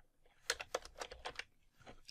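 Typing on a computer keyboard: a quick run of keystrokes starting about half a second in as a short word is typed, with one more keystroke near the end.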